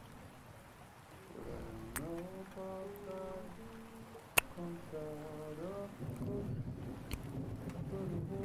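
A soft melody of slow, held notes that glide from one pitch to the next, over a steady patter of rain. There is a faint click about two seconds in and a sharp, louder click about four and a half seconds in.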